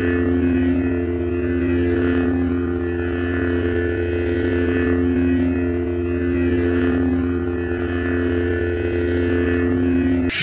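Lightsaber sound effect idling: a steady electric hum with a low buzz beneath it, swelling faintly twice.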